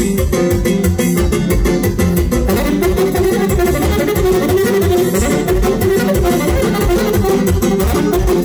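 Live band music: an electronic keyboard plays with a steady beat and bass, joined by violin and saxophone.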